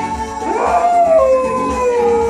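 Small dog howling along to pop music: one long howl that starts about half a second in, swoops up, then slides slowly down in pitch.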